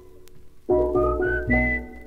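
Steel band music: after a ringing pause, steel pans play a quick rising run of notes over bass pan, and the last, highest note rings on.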